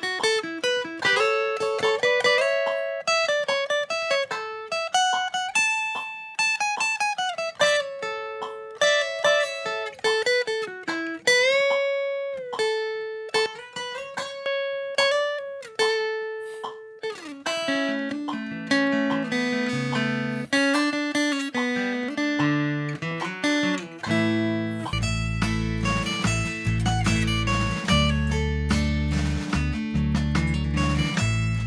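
Steel-string acoustic guitar playing a lead solo at tempo: single-note lines with slides and bends up the neck. About halfway through, the phrases drop lower and get busier. From about 25 seconds in, a deep bass line joins.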